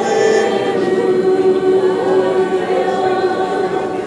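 Church congregation singing a worship song together, many voices holding long, slow notes.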